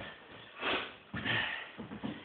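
A man breathing: two soft breaths, one about half a second in and a longer one just past a second.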